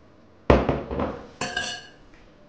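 Metal spoon knocking against a glass bowl: a burst of sharp knocks about half a second in, then a ringing clink near the end.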